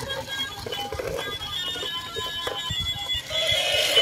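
Battery-operated toy elephant playing a tinny electronic beeping tune, with faint clicking from its walking mechanism. A second, lower toy sound joins near the end.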